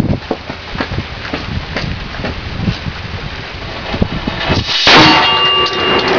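Burning fuse crackling and sputtering for nearly five seconds, then the golf ball cannon fires with one very loud blast, followed by a steady ringing tone. The blast is an overloaded proof-test charge of 1320 grains of Unique powder that blew the breech plug out of the cannon.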